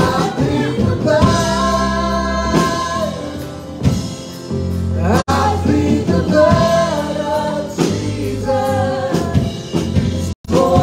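A live church worship band plays a gospel song, with a woman singing lead over the band. The music dips briefly a little past the middle.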